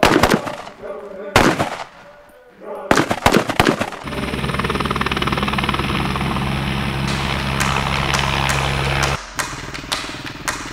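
Rifle shots from FAL-pattern battle rifles: one right at the start, another about a second and a half in, and a quick cluster around three seconds. From about four seconds in a steady low drone takes over, cutting off suddenly near the end.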